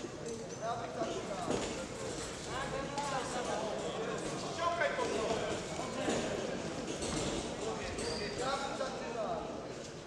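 Voices shouting around a boxing ring during a bout, over irregular thuds of gloves landing and boxers' feet stepping on the ring canvas.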